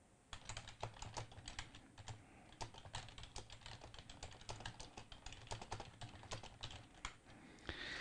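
Faint typing on a computer keyboard: a quick, irregular run of key clicks that stops shortly before the end.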